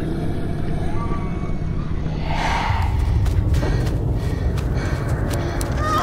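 Trailer sound design: a heavy low rumbling drone, with a rushing whoosh swelling about two seconds in, followed by a run of sharp clicks and knocks.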